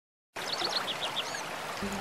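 Steady rushing water, with a few short, high chirps over it, starting abruptly a moment in.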